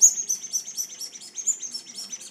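Toy ball being squeezed, giving a rapid, even string of short high chirps, about seven a second, that start suddenly.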